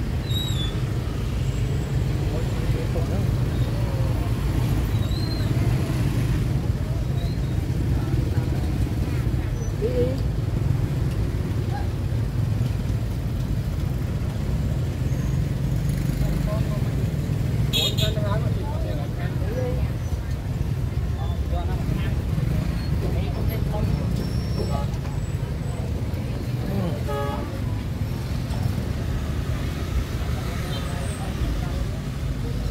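Busy street-market ambience: a steady low rumble of traffic and motorbikes with scattered voices of vendors and shoppers. A brief high-pitched sound stands out a little past halfway.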